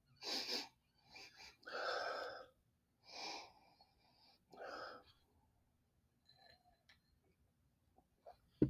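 A person sipping and tasting beer with short breathy puffs: about five of them in the first five seconds, then quiet.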